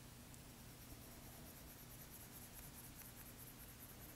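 Near silence with the faint scratch of a stylus on a tablet screen, quick back-and-forth strokes shading in an area.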